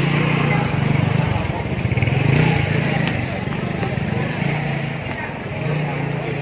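Motorcycle engine running close by, a low hum that drops out and comes back in stretches, with voices of a busy street around it.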